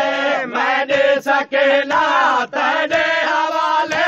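Male voices chanting a Saraiki noha, a Shia mourning lament, in long held, wavering phrases broken by short pauses.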